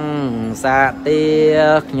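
A voice singing a slow, melismatic chant over a steady low drone: devotional music.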